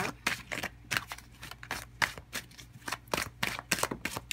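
A deck of tarot cards being shuffled by hand: a run of quick, irregular card flicks and slaps, about four or five a second.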